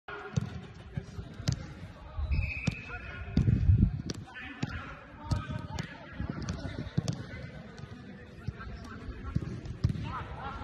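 Footballs being kicked and passed on artificial turf: a string of sharp, irregularly spaced thuds of boot on ball, with a heavier low thump about three and a half seconds in.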